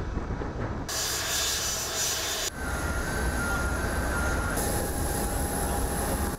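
Jet airliner engines running as the plane lands and taxis: a steady engine noise with a faint thin whine over it. The sound jumps abruptly a few times, about a second in and again later.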